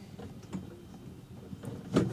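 Faint rubbing and scraping of an electrical cable being pulled through a narrow tube by a drawstring, with a few small clicks and one sharp knock near the end.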